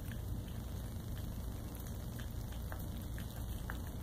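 Cat licking food off a fingertip: a few faint, irregular wet tongue clicks over a steady low background hum.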